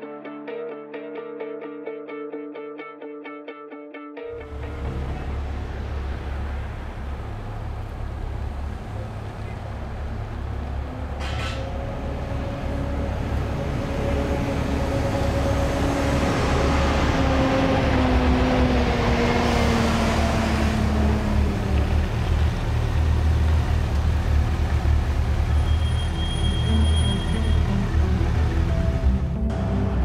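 Plucked-string music that stops about four seconds in, giving way to the low engine rumble and rising road noise of a team coach driving past. Its engine note falls in pitch as it goes by, about two-thirds of the way through.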